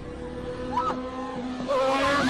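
A motor scooter passing close by, louder towards the end, with short wavering high screeches over a steady held background note.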